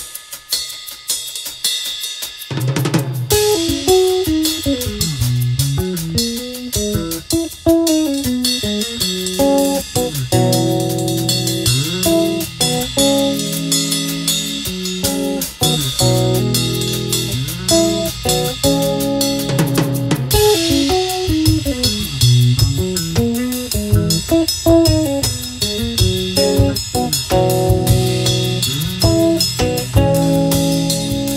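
Instrumental music: a drum kit with hi-hat and cymbals playing a groove, joined about two and a half seconds in by a six-string electric bass playing a busy melodic line over it.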